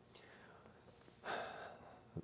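A man draws an audible breath about a second in, after a near-silent pause.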